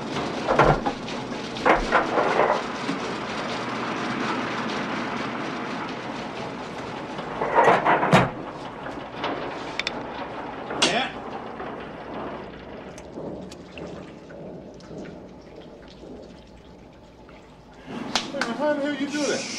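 Knocks and bangs on a metal machine cabinet, a few sharp strikes several seconds apart, over a steady rushing hiss of machinery that fades away toward the end.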